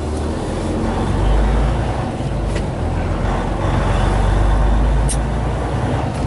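Semi truck's diesel engine running steadily as the tractor rolls slowly, heard from inside the cab as a continuous low rumble.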